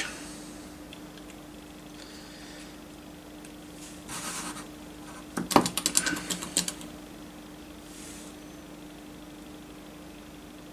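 Green plastic screw cap being twisted off a small square glass bottle of model cement: a quick run of ratchety clicks lasting about a second, a little past halfway, after a brief rustle. A faint steady hum runs underneath.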